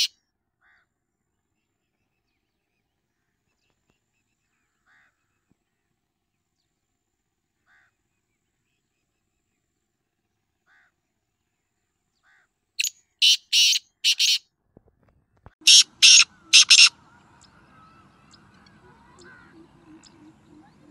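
Black francolin calling: after a few faint short notes, two loud, harsh phrases of about four notes each, a couple of seconds apart in the second half.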